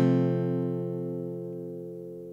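Cutaway acoustic guitar: a chord strummed once at the start and left to ring, fading slowly.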